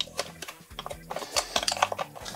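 Wooden puzzle box handled and turned over in the hands: a few light clicks and knocks as its pieces are pressed and tested for movement.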